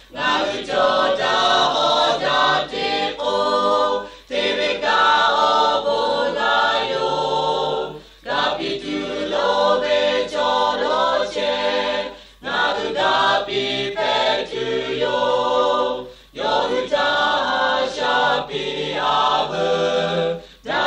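A choir singing in phrases of about four seconds each, with a short break between phrases.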